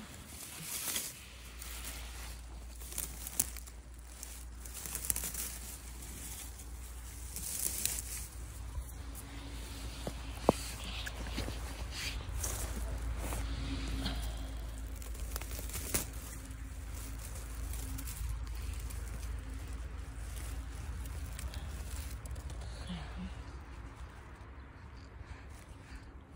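Dry pine needles, grass and heather rustling and crackling as a hand pushes through them, in many short sharp crackles that are densest in the first half. A steady low rumble runs underneath.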